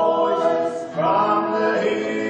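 Several voices singing together, holding long notes, with a new phrase starting about a second in.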